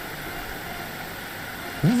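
Steady, even hiss of background noise in a recording, with no rhythm or pitch. A man starts speaking near the end.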